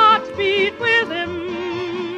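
A song: a voice singing with wide vibrato over instrumental backing, a couple of short high notes in the first second, then one long held note.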